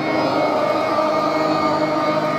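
Group singing in a devotional song, the voices holding one long steady chord.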